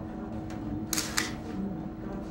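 Two camera shutter clicks in quick succession about a second in, over a steady low room hum.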